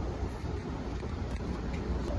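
Steady low rumble inside a passenger train car.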